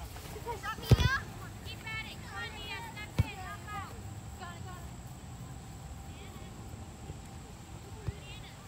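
A soccer ball kicked twice: a sharp thud about a second in, the loudest sound, and another about three seconds in. Between them come high shouting voices from the field.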